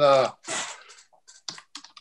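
Typing on a computer keyboard: a quick, irregular run of key clicks in the second half.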